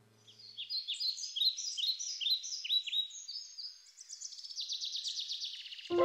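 A small songbird singing: a run of short, high chirping notes about three a second, breaking into a fast trill for the last two seconds.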